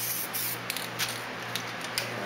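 Aerosol can of Plas-Stick plastic adhesion promoter hissing as it sprays a light coat onto plastic model parts, in one longer burst at the start and then several short bursts. A steady fan hum runs underneath.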